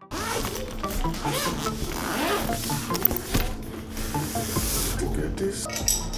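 Zipper on a soft gimbal carrying case being pulled open, followed by rustling and handling of the case and its contents.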